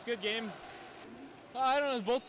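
A man's voice speaking briefly, with a pause of about a second in the middle.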